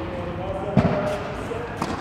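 A tennis ball struck hard with a racket about a second in, the loudest sound, followed by a softer knock near the end, with voices in the background.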